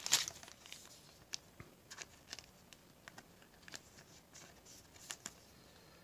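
Faint crinkling and tearing of a trading-card pack's foil wrapper and the cards being handled, in scattered soft ticks, the loudest right at the start.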